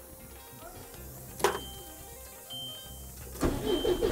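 A sharp click about a second and a half in and a short steady electronic beep near three seconds, then the truck's diesel engine cranks and catches about three and a half seconds in, settling into idle.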